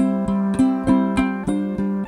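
Acoustic guitar and ukulele playing the opening of a song, single plucked notes about three a second ringing over a held chord.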